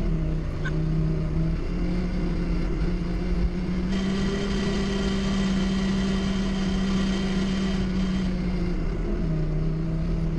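Doosan 4.5-tonne forklift engine running while the truck drives, heard from the driver's seat. Its note rises a little about two seconds in, holds, and settles back about a second before the end. A higher, thin whine rides over it through the middle seconds.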